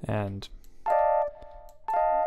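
Short scat-style vocal samples played back from a track in progress. The first is a brief note that slides down in pitch, followed by two short higher notes about a second apart.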